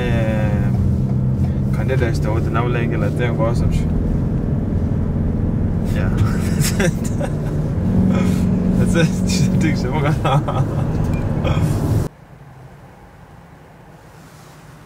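Steady low drone of road and engine noise inside a moving car's cabin, with people talking over it. About twelve seconds in the sound cuts off abruptly to a much quieter background.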